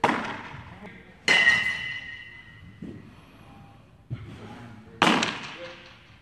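A pitched baseball smacking into a catcher's mitt, followed by two more sharp smacks about a second and five seconds in. Each echoes briefly in a hard-walled room, and the middle one has a short ringing tone.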